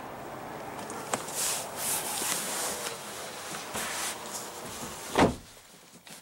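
Rustling and small knocks of an SUV's rear seat and cabin trim being handled as someone moves into the rear seats, then one sharp thump about five seconds in.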